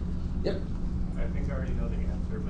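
Faint, indistinct voices over a steady low hum, with one short vocal sound about half a second in.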